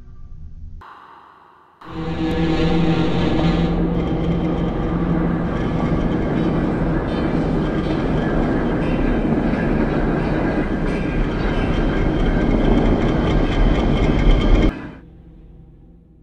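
Clockwork mechanism of a wind-up walking toy clattering, heard very loud and close, with a dense rapid clicking over a heavy rumble. It starts abruptly about two seconds in and cuts off sharply near the end.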